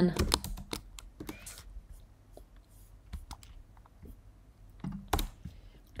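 Typing on a computer keyboard: a quick run of keystrokes in the first second and a half, then a few scattered ones. A brief voice sound comes about five seconds in.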